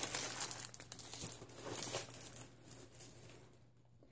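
Clear cellophane bags crinkling as they are handled, dying away about three seconds in.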